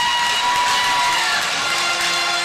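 Music over an arena PA system with a crowd cheering and applauding: a high held note that ends partway through, then a lower held note coming in near the end.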